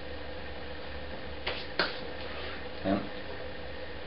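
Workshop room tone with a steady low hum, broken about halfway through by a brief soft rustle and then a single sharp click or tap.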